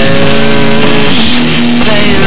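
Loud, distorted rock music with no vocals: electric guitar holding long notes that bend and slide in pitch, with several notes sounding together.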